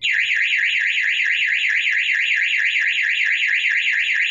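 Burglar alarm siren going off: a loud electronic warble sweeping rapidly up and down, about six or seven times a second.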